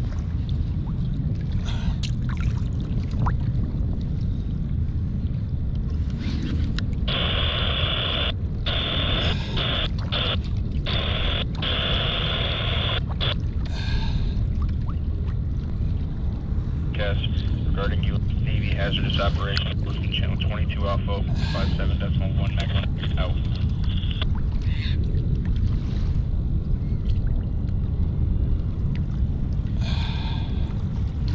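Steady wind rumble on the camera microphone on open water. Stretches of muffled, thin-sounding mid-pitched sound come through it from about a quarter of the way in to nearly halfway, and again around the two-thirds mark.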